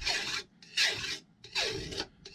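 Flat steel file rasping along the edge of a chainsaw bar in three even strokes, a little under a second apart, filing off the burrs raised along the bar's edge.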